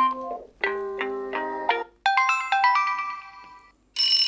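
Amazon Alexa alarm tones played as previews: three short melodic chime phrases one after another, each cut off as the next is chosen. The first ends just after the start, the second is a lower, mallet-like run of notes, and the third, about two seconds in, is higher and bell-like.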